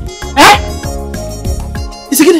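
A dog barks once, loudly, about half a second in, over background music with a steady beat.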